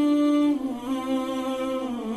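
Outro music of a wordless voice humming a slow melody. It holds one long note, then steps down to a lower note about half a second in.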